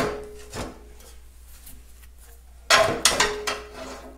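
Sheet-metal tractor cowl knocking and scraping against the dash panel as it is set in place, with a quick cluster of metal clunks and rattles near the end.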